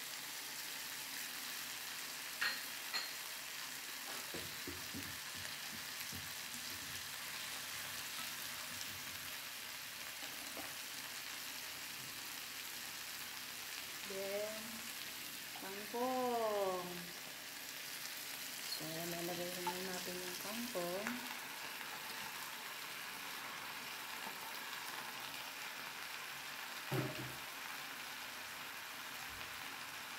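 Fish with tomato, onion and ginger sizzling steadily in a nonstick wok, with a few light knocks from the utensils. A voice sounds briefly in the background about halfway through.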